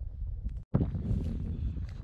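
Wind buffeting the microphone, a low rumble, broken by a brief silence about two-thirds of a second in.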